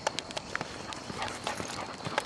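Quick, irregular footsteps with light, sharp clicks as a person and a leashed dog hurry along a paved path.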